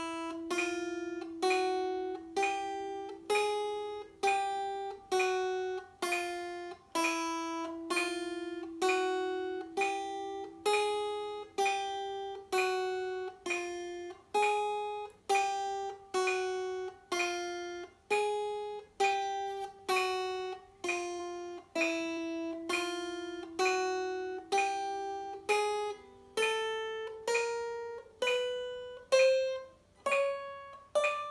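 Small-bodied acoustic guitar playing a slow chromatic exercise: single picked notes, one per beat at about one a second (65 beats a minute), each ringing until the next. The notes climb step by step in pitch over the last few seconds.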